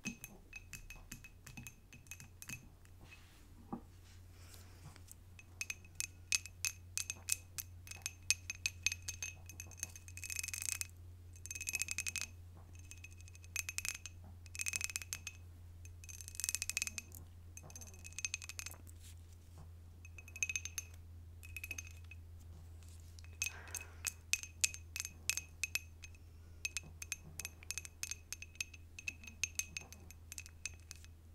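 Long acrylic fingernails tapping fast on a ribbed glass candle jar, each tap ringing briefly, with a few longer scratching strokes along the glass. The first few seconds hold sparser, drier taps without the ring.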